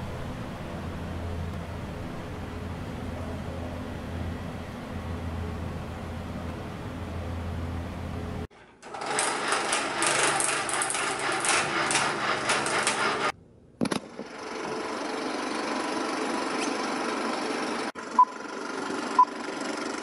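A steady low hum, then after a cut a Super 8 film projector running with a fast, loud mechanical clatter for about five seconds. After a short break comes a quieter hiss of old film sound with two sharp pops near the end.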